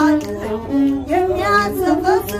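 A woman singing an Ethiopian azmari song in a high, ornamented voice with bending, melismatic lines, accompanied by the steady bowed tone of a masenqo, a one-string fiddle.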